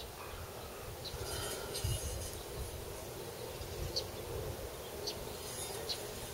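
Faint outdoor background: a low steady rumble with a thin buzz over it and a few faint, short high chirps.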